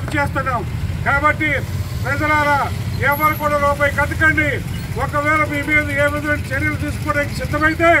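A man's voice speaking loudly and emphatically in short phrases with brief pauses, over a steady low rumble.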